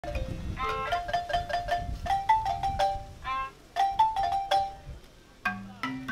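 Balafon, a West African wooden xylophone, played in quick runs of sharply struck melody notes, pausing briefly about three and five seconds in, with lower notes coming in near the end.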